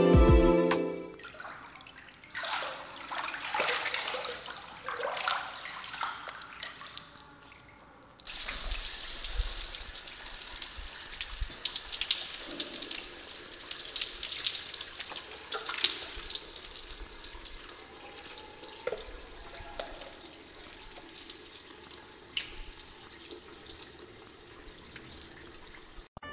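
Water splashing and sloshing, then about eight seconds in an open shower spout starts with a sudden rush and keeps pouring and splattering onto a person's head and body, easing off a little toward the end.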